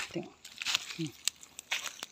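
Footsteps rustling and crunching in dry leaf litter, a few separate steps, with brief low murmured voice sounds between them.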